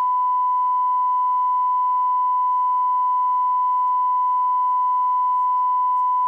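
Broadcast line-up tone: one steady, pure test tone held unbroken at a constant level, filling the feed while no programme is running.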